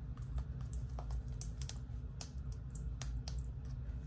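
Irregular light clicks and taps of fingernails picking at plastic craft-supply packaging, a struggle to get it open.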